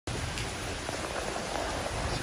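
Heavy rain pouring onto a swimming pool's surface and paved deck inside a screened enclosure: a steady, even hiss of splashing drops.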